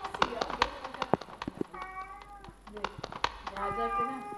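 Cat meowing: one drawn-out meow about two seconds in and another starting near the end, after a run of light clicks and taps in the first second and a half.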